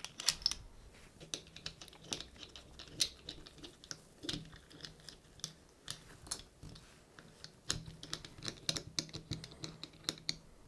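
Irregular light clicks and taps of small metal parts as a CPU is seated in a delidding tool and the tool's pusher block and screw are fitted by hand.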